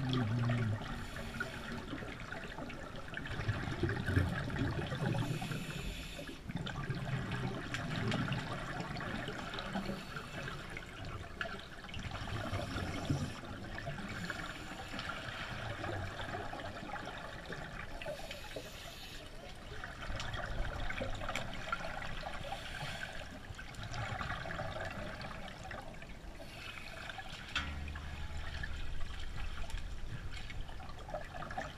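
Underwater sound from a camera submerged in a pool: scuba regulator exhaust bubbles coming in bursts every few seconds over a steady watery hiss.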